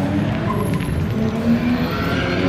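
Car engine running at low revs as a coupe rolls slowly up and stops, its pitch shifting slightly.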